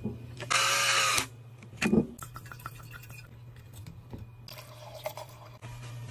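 Electric wine aerator dispenser running for under a second about half a second in, a short burst of motor whirr and wine pouring into a glass. A thump follows about two seconds in, then faint clicks.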